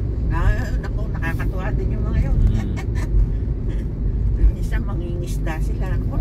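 Steady low road and engine rumble inside a moving car's cabin, with people's voices talking over it.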